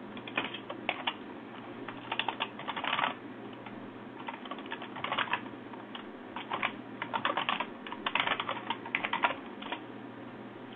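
Computer keyboard typing in several short bursts of keystrokes with pauses between them.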